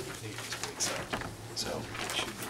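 Low background murmur of people talking quietly, with scattered clicks and knocks of papers and objects being handled, over a steady low hum.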